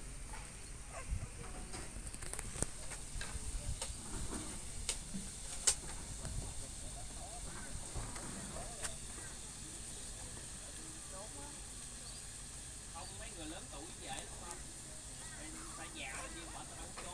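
Meat sizzling on a grill, a steady hiss, with scattered clicks and knocks in the first half and faint voices near the end.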